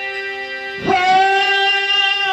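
Harmonium playing a sustained chord. About a second in, a man's singing voice comes in on a long held note over it, and the sound gets louder.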